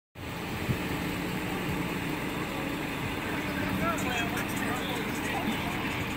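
A motor vehicle engine idling with a steady low hum, with faint voices in the background.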